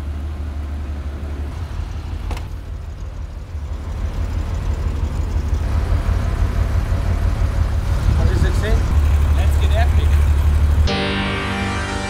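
A low, steady rumble that grows louder in the second half, then cuts off suddenly near the end as music begins.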